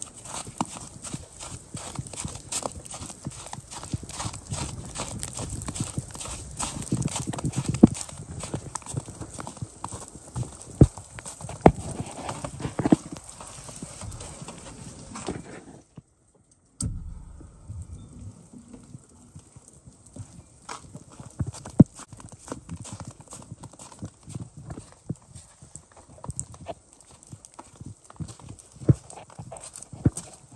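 Footsteps through wet, slushy snow and then on wooden boards, amid rain pattering as many small, irregular taps. The sound cuts out for about a second halfway through.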